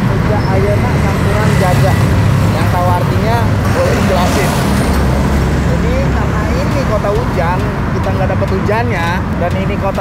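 Steady road-traffic noise from cars and minibuses passing close by, with a man talking over it.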